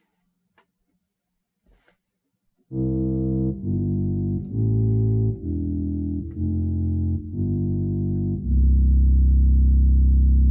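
Sampled pedal diaphone stop of the 1898 Hope-Jones organ played on a virtual pipe organ: a powerful, smooth bass tone voiced towards a reed tonality. About three seconds in, six short pedal notes sound one after another, then a lower note is held.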